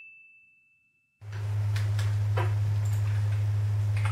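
A sound-effect ding, one high ringing tone, fading out; a moment of dead silence follows. About a second in, a steady low electrical hum starts and carries on, louder than the ding's tail, with a few faint clicks over it.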